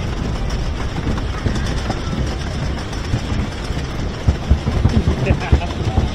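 Wooden roller coaster train being hauled up the chain lift hill: a steady mechanical rattle of the lift chain with repeated clacks, which grow sharper in the last couple of seconds as the train nears the crest.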